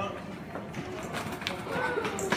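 Small plastic skateboard rolling over stone paving, its wheels clicking over the joints, under indistinct voices.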